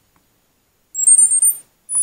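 Syma W1 GPS drone being switched on: a quick run of very high electronic beeps stepping upward in pitch about a second in, then a single higher beep near the end.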